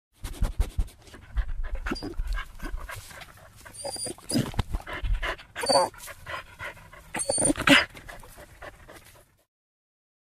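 A dog panting with short whimpers, in uneven bursts that stop suddenly near the end.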